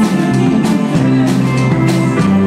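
Rock band playing live: electric guitar, keyboards and drum kit, with drum and cymbal hits keeping a steady beat.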